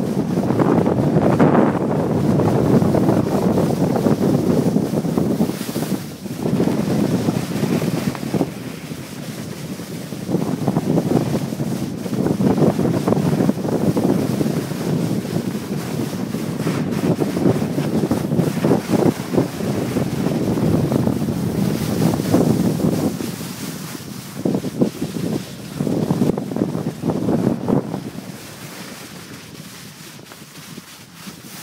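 Wind buffeting the microphone of a camera carried on a downhill ski run, loud and uneven in gusts, dropping away near the end as the run slows.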